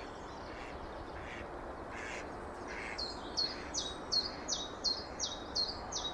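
A small bird calls a fast run of about ten short, high notes, each dropping in pitch, starting about halfway through, with a few fainter chirps before it. Under the calls is a steady, faint background rumble.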